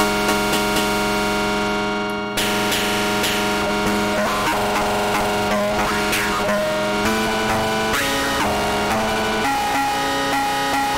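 Heavily distorted sampled sound played through saturation and overdrive as held chords: a dense, gritty buzzing drone that changes pitch about two and a half seconds in and again near seven, eight and nine and a half seconds.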